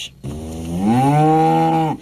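A cow mooing: one long call that rises in pitch and then holds steady before stopping abruptly.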